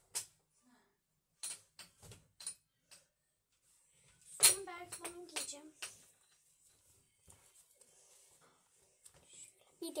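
A few short knocks and taps, then a girl's voice in a brief stretch about four seconds in, the loudest sound here, followed by faint rustling as she handles clothes in a small room.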